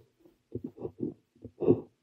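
Parker 45 fountain pen nib scratching across paper in short strokes as Korean characters are written: a quick run of strokes from about half a second in, with the loudest stroke near the end.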